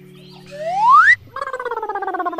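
Cartoon sound effects: a rising whistle-like glide about half a second in, then a falling, rapidly fluttering warble.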